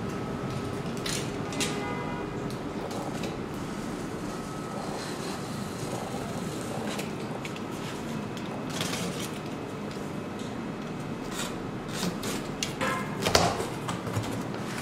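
Packing tape on a cardboard box being slit and peeled, with scattered crackles and scrapes of tape and cardboard. Near the end comes a louder run of ripping and cardboard handling as the flaps are pulled open.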